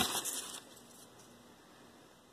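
Faint handling noise of 3D-printed plastic clips being moved in the hand over a tabletop, brief and light in the first half second, then quiet room tone.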